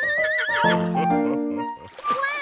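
A horse whinnying once: a quavering call that wavers in pitch and falls away within about a second. It sounds over a children's song backing track.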